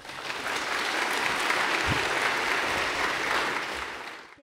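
An audience applauding, building within the first half second and then holding steady, with a single low thump about two seconds in.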